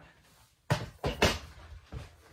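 Two sharp knocks about half a second apart, then a lighter knock near the end: a just-removed doorway pull-up bar being handled and set down.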